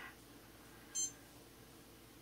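Faint room tone with one brief high-pitched beep-like chirp about a second in.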